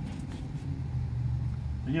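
Steady low engine drone, like a motor vehicle idling, with a few faint light clicks over it.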